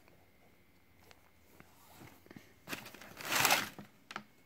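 A few faint handling ticks, then a rustle of shoebox tissue paper lasting about a second near the end.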